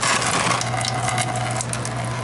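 Engine coolant streaming out of an open radiator drain into a plastic drain pan, splashing and pattering steadily; it starts suddenly at the outset as the drain opens. A steady low hum runs underneath.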